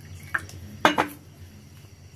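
Water poured from a glass conical flask into a small glass bowl, with light glass clinks: a faint one about a third of a second in and two louder ones around one second in.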